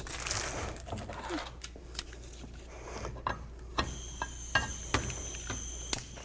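A few light handling clicks and knocks, then about four seconds in a handheld gas torch starts hissing with a steady high whine, broken by several sharp clicks as it is lit.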